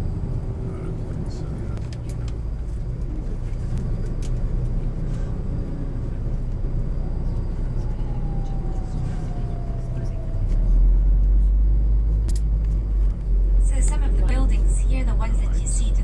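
Low, steady rumble of a moving tour bus's engine and road noise heard from inside the cabin, growing louder about two-thirds of the way through.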